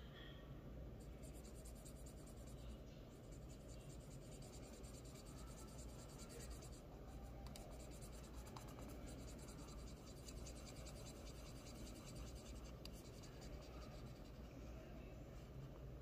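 Faint scratching of a pen on paper, shading in a small shape with quick short back-and-forth strokes.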